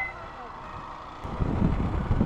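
Motorcycle riding noise on an action camera: a low rumble of wind and road, quiet for about the first second, then louder and uneven from about a second and a half in.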